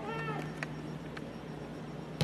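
A brief, distant high-pitched call, likely a player shouting across the field, in the first half second. Two faint clicks follow over a low steady hum.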